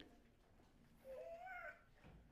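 Near silence with one faint, short pitched sound about a second in, its pitch rising and then falling.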